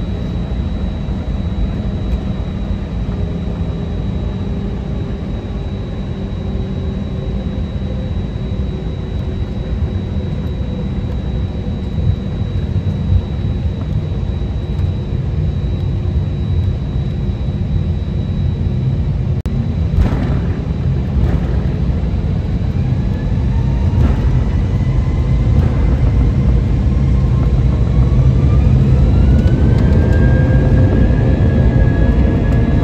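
Cabin noise inside an Airbus A320 taxiing: a steady low rumble with a thin constant whine. A sharp knock comes about twenty seconds in, then the engines spool up for takeoff, their whine rising in pitch and the rumble growing louder as the takeoff roll begins.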